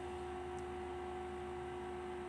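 Faint steady hum holding one constant pitch, with no other sound.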